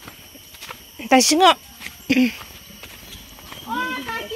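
Short wavering vocal calls about a second in and again about two seconds in, then voices speaking near the end.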